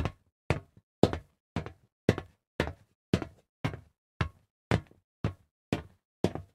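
Footsteps on a concrete alley, evenly spaced at about two steps a second, each a short sharp knock with near silence between.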